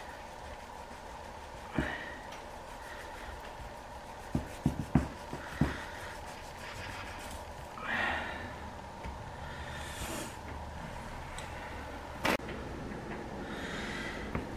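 A kitchen knife cutting and trimming fat off a raw brisket on a wooden cutting board: quiet cutting with a few sharp knocks against the board, a quick cluster of them about halfway, and two breaths, over a steady low hum.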